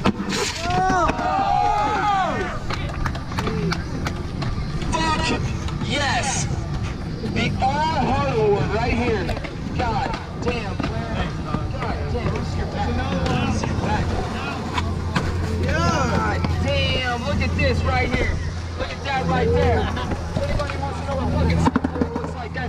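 Several skaters' voices calling out and chatting in the open, with a few sharp clacks of a skateboard on concrete about five to six seconds in. A low steady hum comes in about halfway through.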